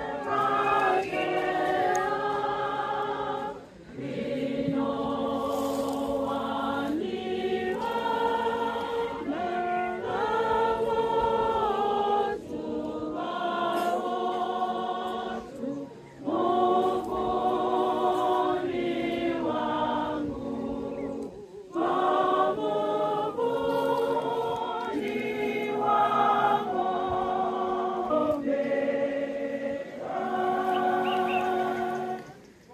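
A crowd of mourners singing a slow hymn together, in long held phrases with short breaks between them.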